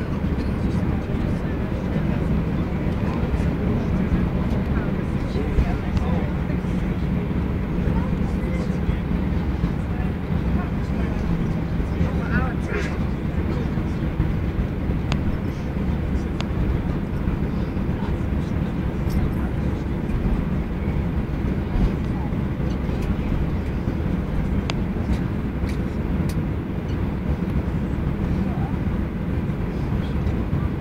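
Cabin noise inside an Airbus A321-211 taxiing: a steady low rumble from its CFM56 engines at taxi power and the rolling of the aircraft, with a few faint ticks.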